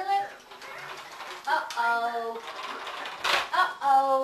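A wicker toy basket's lid knocking down once, a little over three seconds in, amid a few short, held voice-like notes.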